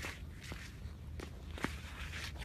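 Footsteps on lake ice: four sharp steps, the last the loudest, over a steady low rumble of wind on the microphone.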